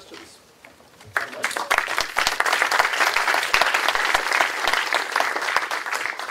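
Audience applauding: many hands clapping, starting suddenly about a second in and holding steady.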